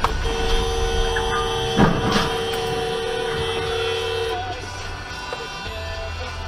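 A car horn sounding one steady two-note blast for about four seconds, over background music, with two short knocks near the middle.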